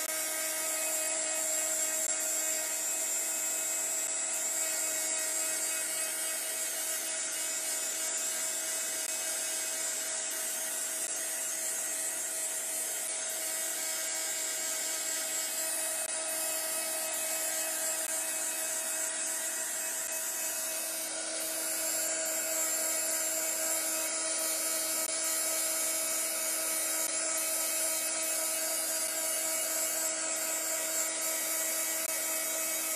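Handheld craft heat tool running steadily, its small fan motor humming with a steady pitch under a rush of hot air, as it dries a still-wet layer of acrylic paint. It gets a little louder about two-thirds of the way through.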